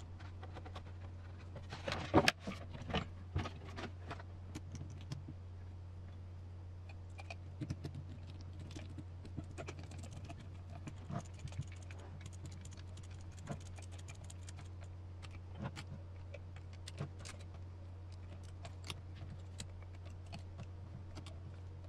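Hex driver and small metal parts clicking and clinking as screws are driven into a brass steering knuckle on an RC crawler's front axle, with a louder clatter of several clicks about two seconds in and scattered light ticks after.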